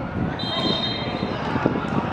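Referee's whistle blown once, a steady high blast of just under a second starting about half a second in, signalling that the free kick may be taken.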